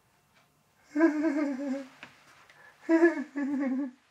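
A person humming two short phrases, each about a second long with a wavering, vibrato-like pitch.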